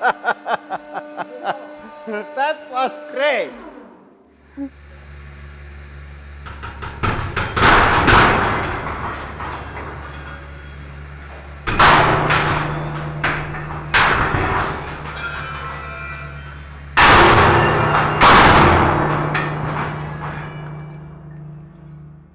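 A 150-ton hydraulic press's pump hums steadily as it crushes four nested steel ball bearings. Four loud cracks with ringing metal follow, the first about seven seconds in, as the bearing races shatter one by one at a low load of about five tons.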